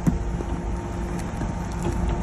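A vehicle engine running steadily, with a low rumble of wind on the microphone and a few faint crunches.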